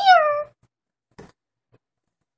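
A woman's high, squeaky put-on voice exclaiming "I'm here!", rising then falling in pitch over about half a second. A faint click follows about a second later.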